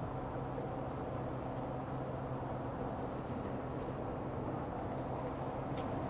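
Steady drone inside the cab of a motorhome cruising at motorway speed: a low, even engine hum under road and tyre noise.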